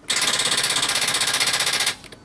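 Land Rover Discovery 3 failing to start on a battery drained well below flat: instead of cranking, the starting system gives a loud, rapid, even chattering buzz for just under two seconds, then cuts off sharply.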